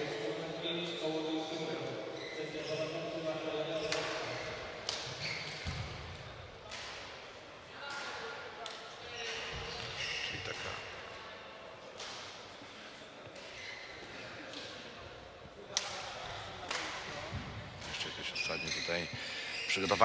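Badminton hall ambience: scattered sharp knocks of racquets striking shuttlecocks, some close and some further off, echoing in the large hall, over faint distant voices.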